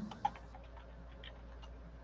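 Faint, irregular small clicks and ticks over a low steady hum, with one slightly louder click about a quarter second in.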